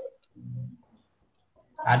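Two short clicks and a brief low murmur of a voice, heard over a video-call audio line that cuts to dead silence between sounds. A voice starts speaking near the end.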